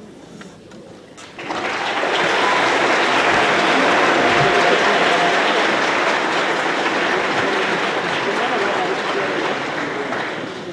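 Audience applause in a hall. It starts suddenly about a second and a half in, holds steady, and fades near the end.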